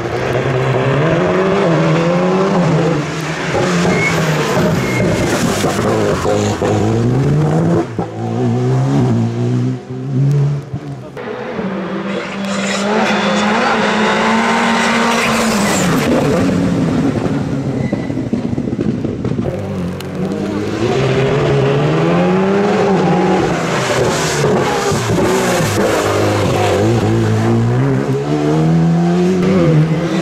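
Rally cars, such as an Alpine A110 and a Škoda Fabia, taking bends on a wet tarmac stage one after another: engines revving hard, the pitch stepping up through quick gear changes and dropping as the drivers lift off.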